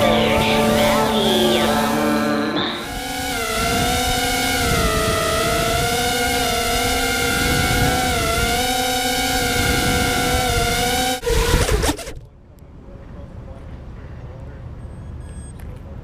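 FPV racing quadcopter's brushless motors whining from the onboard camera, the pitch rising and falling with throttle. About eleven seconds in there is a short loud crash as it comes down, and the motors stop.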